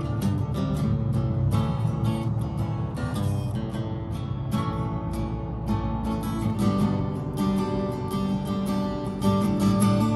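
Acoustic guitar strummed in a steady rhythm, chords ringing on between the strokes.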